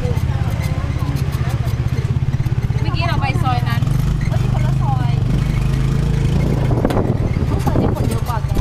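Motor scooter engine running steadily as it pulls a loaded passenger sidecar, with voices over it and a couple of knocks near the end.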